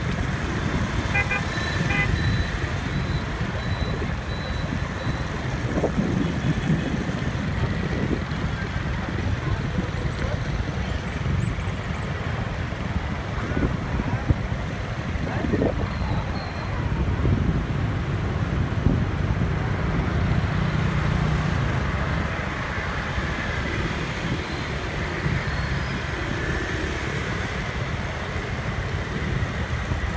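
Riding in night-time street traffic: a steady low rumble of motorbike engines, tyre noise and wind on the microphone, with a few short horn beeps about a second in.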